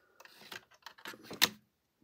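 Small LEGO plastic pieces clicking and knocking as the throne build's hinged wall and a minifigure are moved by hand, with one sharper, louder click about one and a half seconds in.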